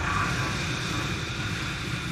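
Closing sound effect of a film trailer: a steady, dense roaring rush of noise with no speech.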